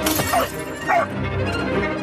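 A wine glass shattering right at the start, over dramatic film-score music.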